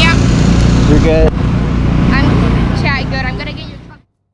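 Outdoor crowd sound: scattered voices and high calls over a steady low rumble, fading out over the last second.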